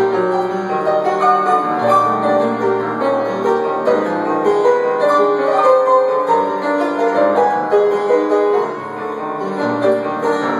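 Solo piano played live, an instrumental passage of sustained chords under a moving melody line.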